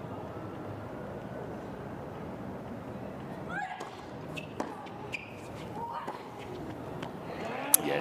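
Professional tennis rally on a hard court: a few sharp racket strikes on the ball in the second half, the loudest just before the end, with short squeaks in between, over a steady crowd and court ambience.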